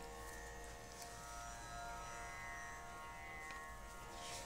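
Faint, steady drone of several held pitches, a tanpura-style shruti drone sounding on its own between spoken phrases.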